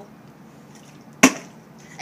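Two small plastic water bottles flipped at once and landing upright on a concrete floor: one sharp clack about a second in.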